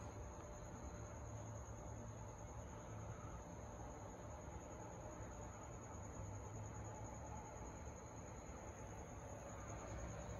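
Faint steady hum and hiss of room tone, with a thin high-pitched whine held throughout and no distinct events.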